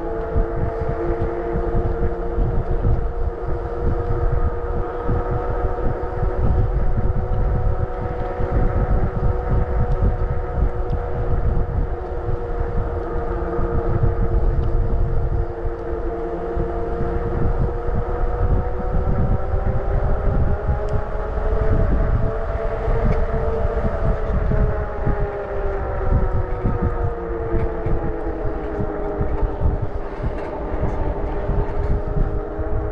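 Motorcycle engine running at a steady cruise, its pitch rising and then falling back a little about twenty seconds in, with wind rumble on the microphone.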